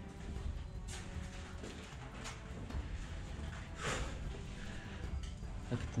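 Low rumble of a handheld camera being moved, with a few faint scattered knocks and rustles, and a louder rustle about four seconds in.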